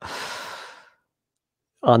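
A person's sigh: a breathy exhale into the microphone that fades out within about a second.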